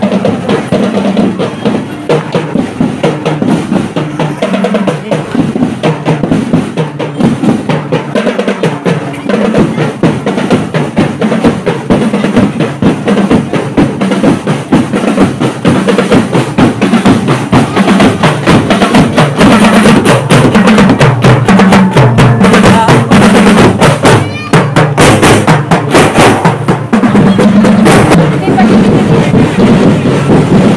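Marching drum and lyre band playing a march, with snare and bass drums beating a dense, steady rhythm that grows louder.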